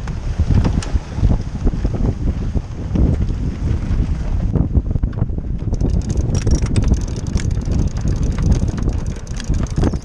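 Strong wind buffeting the microphone on a heeled sailboat's deck, with water rushing along the hull. From about halfway, a rapid run of sharp snaps joins in: the torn mainsail flapping in the gusts.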